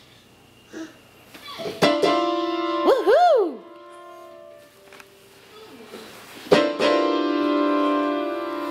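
Digital piano keys pressed in clusters by a toddler: a loud chord of several notes about two seconds in that rings for a couple of seconds, then after a short quiet gap another cluster about six and a half seconds in that sustains to the end. A brief sliding tone rises and falls over the first chord.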